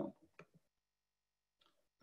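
Near silence: a man's speech trails off with a few faint clicks, then the audio goes almost completely quiet.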